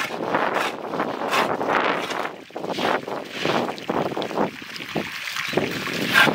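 A short bundle-twig hand broom swishing water across a flooded concrete floor in repeated strokes, with water splashing.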